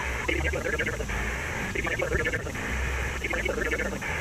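Amateur HF transceiver's speaker giving a steady band hiss with faint, garbled sideband voices coming through, as the operator listens for answers to his CQ call.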